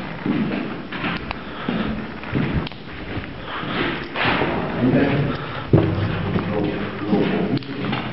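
Indistinct talking, with a series of dull thumps and knocks scattered through it; the sharpest knock comes a little before two-thirds of the way in.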